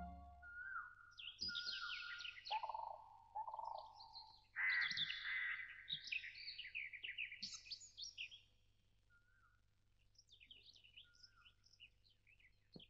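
Birds chirping and singing: many short, quick calls overlapping for about eight seconds, then a few faint calls near the end.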